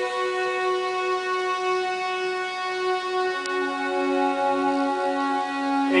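String orchestra of violins and other bowed strings playing slow, long held notes, the lowest line stepping down twice while the upper notes sustain.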